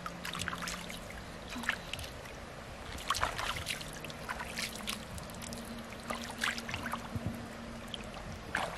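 Pond water splashing and dripping in short, irregular bursts as a large freshwater mussel is swished through shallow water by hand and lifted out.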